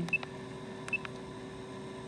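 Keypad presses on a PCE-TDS 100 handheld ultrasonic flowmeter, each a click followed by a short high beep, twice: just after the start and about a second in.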